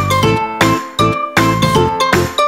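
Upbeat background music: short, quickly fading notes over a strong bass on a bouncing beat.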